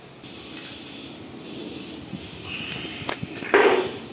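Handling noise as a metal plate of cut fish is lifted off a tiled floor: a sharp click about three seconds in, then a short, louder scraping rush just before the end.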